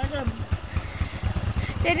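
Small motorcycle engine running on the move, heard as a rapid, even low pulse of about ten beats a second.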